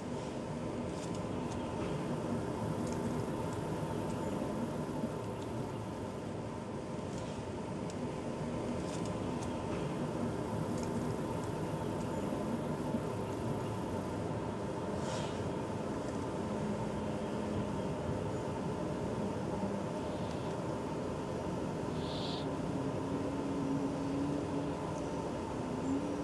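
Steady outdoor background noise: a low, even hum with a thin steady tone, faint low tones that come and go, and a few faint ticks.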